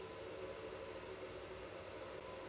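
Faint steady hiss with a faint low steady hum and no distinct events: the background noise of the recording while nothing else sounds.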